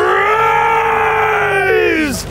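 A man's voice holding one long, loud, wordless note, a mock incantation to make the fire rise. The note holds steady and sags a little in pitch near the end.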